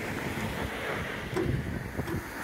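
Wind on the microphone: a steady rushing noise, with one soft knock about one and a half seconds in.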